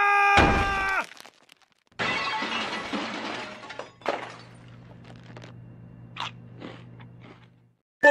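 A man's long held shout cut off by a low explosion boom, then, after a short gap, a crash of shattering glass lasting about two seconds. A sharp knock follows, then a few small clinks over a faint low hum: layered commercial sound effects.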